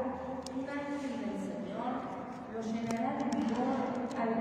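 A person's voice speaking, with no words made out, and a few faint clicks.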